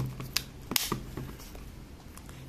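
Plastic battery door of an Aikon F-80 compact 35 mm film camera being handled and pushed shut, with a few small clicks and rustling, the loudest snap just under a second in.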